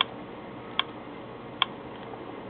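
Three short, sharp clicks about 0.8 s apart as a finger taps the touchscreen of a Pioneer AVIC-S2 navigation unit, over a faint steady hiss.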